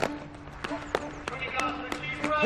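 A string of irregular sharp knocks, about six in two seconds with the loudest at the start, over a low steady hum.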